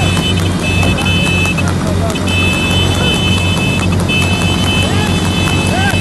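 Motor vehicle running steadily at speed, a continuous low hum with a steady high whine over it, while short rising-and-falling shouts sound several times. The hoofbeats of the trotting horse beside it are barely heard under the engine.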